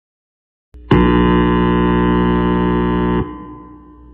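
A loud, sustained musical chord of many steady notes starts about a second in, holds for about two seconds, then fades away.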